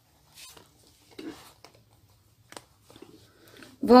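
Faint rustling and a few soft ticks of sewing thread being pulled through fabric as rhinestones are hand-stitched onto a top.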